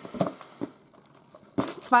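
A few faint clicks in a quiet room, then a woman starts speaking near the end.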